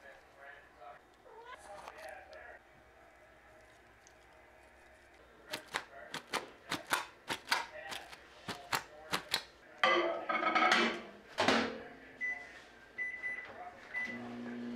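A knife poking through plastic wrap stretched over a bowl of vegetables: a run of about ten sharp pokes, then a louder stretch of crinkling. Near the end, a few short beeps from a microwave oven's keypad as it is set.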